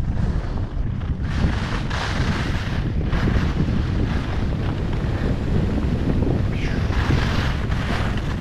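Wind buffeting the camera microphone during fast downhill skiing, a loud steady rumble, with the hiss of skis carving turns on packed snow coming up from about a second in and again near the end.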